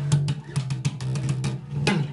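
Electric bass guitar played fingerstyle: a quick riff of low plucked notes, with sharp clicks from the string attacks or drum hits throughout.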